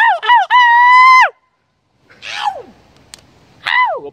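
High-pitched falsetto hoots called out to other people. First two short falling whoops and a long held call that cuts off abruptly, then after a gap two more falling calls.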